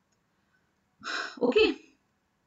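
Near silence for about a second, then a woman says a short "okay".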